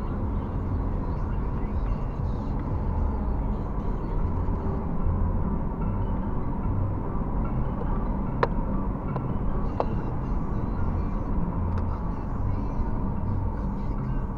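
Road and engine noise inside a moving car's cabin, picked up by a dashcam: a steady low rumble, with a few sharp clicks about eight to ten seconds in.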